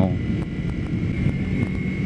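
Kawasaki Ninja 250R's parallel-twin engine running steadily on its stock exhaust while riding, with wind noise on the microphone.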